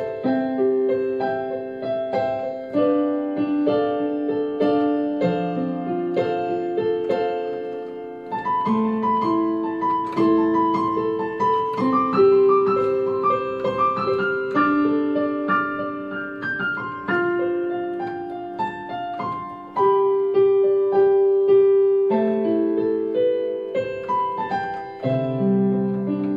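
Yamaha MOXF8 synthesizer keyboard played with a piano sound: a slow melody of held notes over sustained lower chords, each note struck and left to ring.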